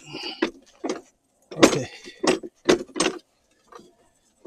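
The telescoping metal frame of a Segway go-kart conversion kit being pulled out to its longest setting: a string of sharp knocks and rattles as the rails slide and clack.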